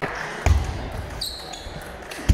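Table tennis rally in a large hall: a sharp knock of the ball on bat or table about a quarter of the way in, then a short high squeak near the middle, over a steady hubbub of voices and play at other tables.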